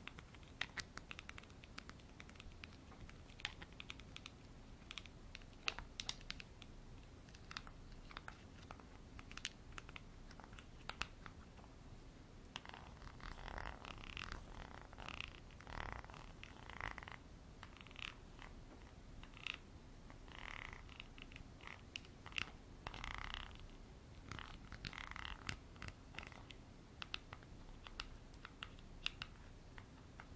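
Close-miked tapping and scratching on the textured base of a glass bottle: light sharp ticks for the first dozen seconds, then denser scratchy rasping until near the end.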